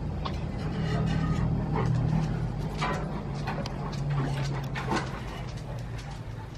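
A white bulldog lying in a plastic kiddie pool making dog sounds over a steady low hum, with scattered light clicks.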